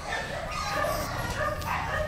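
45-day-old English bulldog puppy giving a string of short, high yips and barks.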